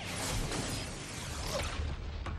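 Television sports broadcast transition: a sweeping whoosh sound effect with music, as the telecast cuts to a graphic bumper.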